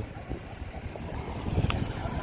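Wind buffeting the handheld phone's microphone in an uneven low rumble, over traffic noise from the road alongside, with one short sharp click about three-quarters of the way through.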